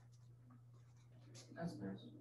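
Quiet room tone with a steady low hum and a few faint clicks, and a brief soft voice near the end.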